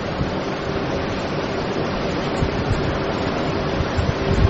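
Steady background hiss of the recording, an even rushing noise with a faint low hum under it and no speech.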